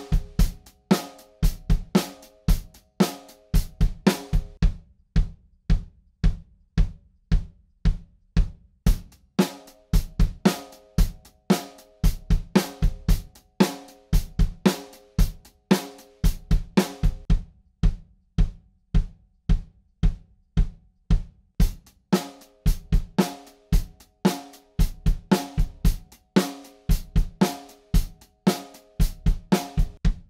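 DW drum kit played in short grooves of bass drum, snare and cymbals, the bass drum struck through a pedal with different kick drum beaters in turn (wood, yarn-wrapped, cork-core) to compare their sound. Twice the bass drum plays alone for a few seconds between fuller grooves.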